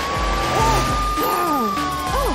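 Police car siren sounding one long tone that rises, holds and begins to fall away, over upbeat cartoon background music with a steady beat. Short swooping sound effects come in between.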